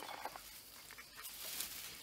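Faint handling sounds of a knife with a wooden handle being lifted and moved over a leather mat, over quiet woodland background.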